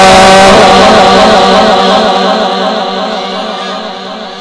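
A male Quran reciter's amplified voice holding a long, wavering melismatic note in mujawwad style at the close of a verse, slowly fading away.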